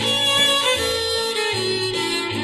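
Country band playing an instrumental passage: a fiddle carries the lead with vibrato over a walking bass line.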